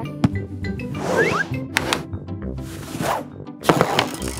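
Cartoon sound effects of a marble bouncing around a room over background music: sharp knocks about a quarter-second in, in the middle and near the end, with swishing sweeps in between.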